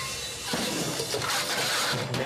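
A short music phrase ends about half a second in, giving way to a loud rushing, scraping noise of a snowplow blade pushing through snow.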